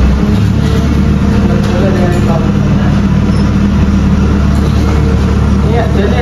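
An engine running steadily, making a loud, unbroken low drone with some voices in the background.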